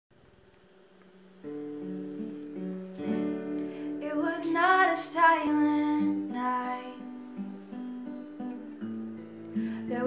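A steel-string acoustic guitar starts about a second and a half in, after near silence, playing a slow intro of held notes. A young woman's voice comes in singing over it about four seconds in.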